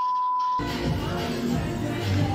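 A steady test-tone beep, the tone played with colour bars, cuts off about half a second in. Music starts right after it.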